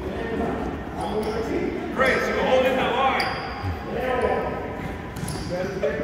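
Indistinct voices of several people talking and calling out, echoing in a large gymnasium, with thumps and a few short high squeaks on the hardwood floor.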